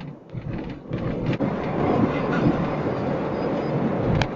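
Road and engine noise heard inside a moving car: a dense, steady rumble that swells louder about a second in, with a few light clicks before it.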